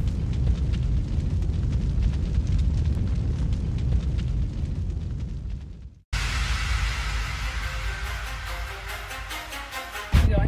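Cinematic logo-intro sound effect: a deep, rumbling low sound with faint crackles that fades out to a moment of silence about six seconds in. Music then starts.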